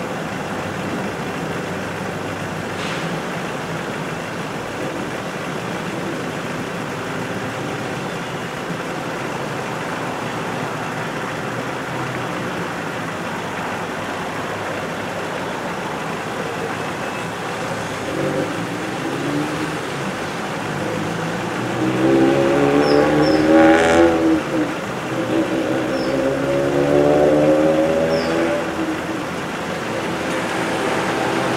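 Road traffic at a street junction: a steady hum of passing cars. In the last third, vehicle engines pulling through close by grow louder, their pitch rising and falling as they accelerate, with two louder passes.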